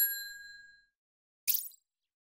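Sound effects from a subscribe-button animation. A bright bell-like notification ding rings out and fades over most of a second. About a second and a half in comes a short click, like a mouse click.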